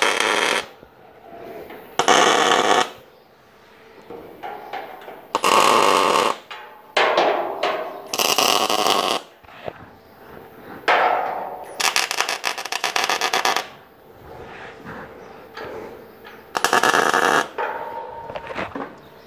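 Electric arc welding: a series of short tack welds, each a crackling burst of arc lasting about a second, with pauses between, about six in all. The tacks fix the bottom of the truss's uprights and diagonal braces so the chords don't spread open when the full welds are run.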